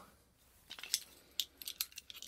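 Small metal fittings handled in the hands, clinking and clicking lightly: a scatter of short, sharp clicks beginning about half a second in.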